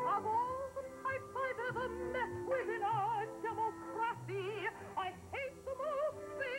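A woman singing in a trained, operatic voice with a wide vibrato on held notes, over instrumental accompaniment with steady low notes.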